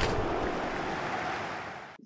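A steady rushing hiss on the microphone, starting with a click and slowly fading, then cut off abruptly.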